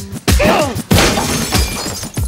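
Glass shattering in a loud crash about a second in, just after a falling sweep, over the song's hip-hop beat.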